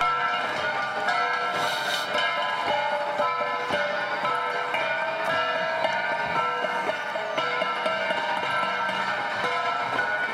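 An ensemble of flat bronze gongs (Cordillera gangsa) struck by several players at once, many overlapping ringing tones over a dense, steady run of strikes.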